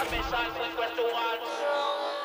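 Electronic dance music from a DJ mix in a breakdown: a vocal sample and melodic lines carry on while the bass and drums thin out and drop away near the end.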